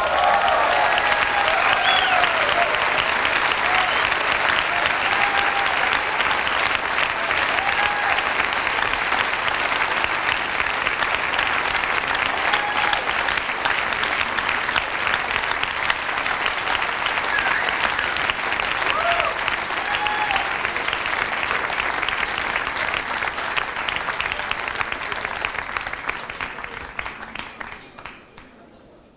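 Concert audience applauding, with scattered cheers, as a tune ends; the clapping thins out and fades over the last few seconds.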